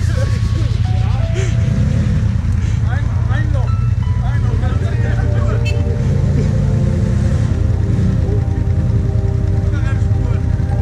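A quad bike's engine running steadily at low revs in a muddy trench, with people's voices and music over it.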